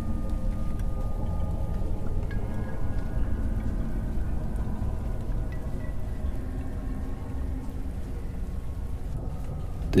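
Steady rain, with faint held musical tones that shift pitch now and then.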